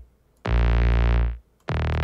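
Future bass drop chord progression played on a supersaw synthesizer, with heavy bass under it. Sustained chords about a second long are separated by short gaps, with one chord about half a second in and the next starting near the end.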